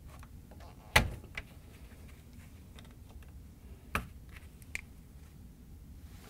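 A few sharp clicks, the loudest about a second in and another about four seconds in: a small screwdriver prying the wires' push-on connectors off the terminals of a plastic refrigerator door light switch.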